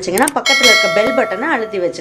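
A bright bell chime, the notification-bell sound effect of a subscribe animation, strikes once about half a second in and rings on for more than a second. A voice carries on underneath it.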